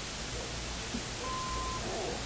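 Steady hiss of an old tape soundtrack, with one short faint beep, about half a second long, a little over a second in: a slide-advance cue tone.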